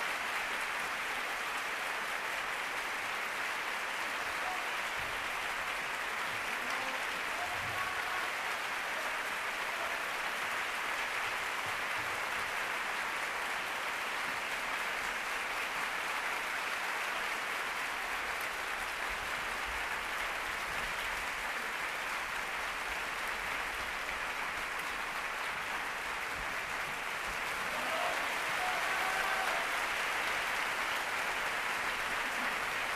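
Theatre audience applauding steadily, a little louder near the end.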